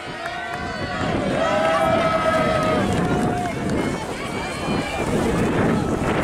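Spectators shouting encouragement to passing runners, with several long, drawn-out calls in the first few seconds, over wind buffeting the microphone.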